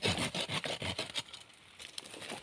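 Orange-handled pruning saw cutting through tree roots in the soil, a quick run of short rasping strokes that eases off after about a second.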